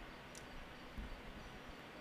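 Quiet outdoor ambience: a faint steady hiss with a short low thump about a second in.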